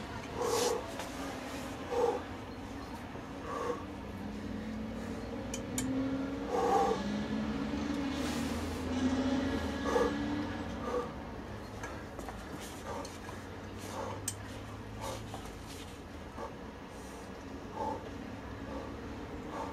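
A man grunting and breathing hard with effort during a near-maximal one-handed pinch-grip lift of a 51.7 kg load on a 40 mm block. Short grunts come every second or two, and a longer strained groan runs through the middle.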